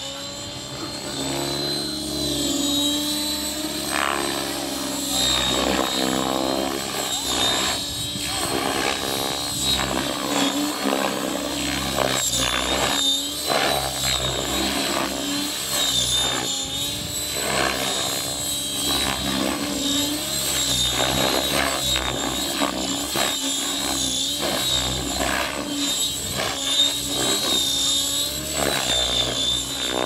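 Align T-REX 700E electric RC helicopter in flight: the rotor and electric motor whine rises and falls in pitch as it manoeuvres, and the level swells and fades.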